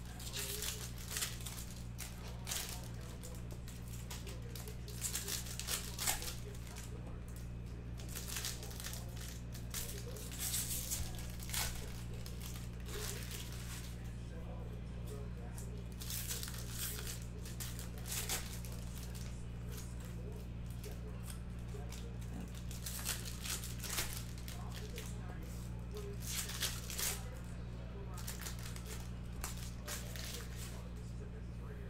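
Foil trading-card packs crinkling and tearing as they are opened by hand, with the cards handled and stacked; irregular crackly bursts every second or so over a steady low hum.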